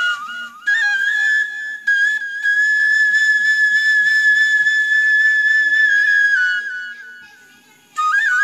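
Background music played on a flute: a few quick notes, then one long high note held for about five seconds, stepping down and fading away near the end.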